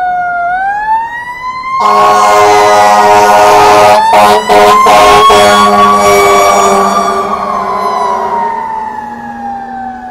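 Fire engine siren wailing, its pitch slowly rising and falling, with an air horn blasting over it from about two seconds in until about eight seconds, broken by a couple of short gaps. The sound grows fainter near the end as the engines pass.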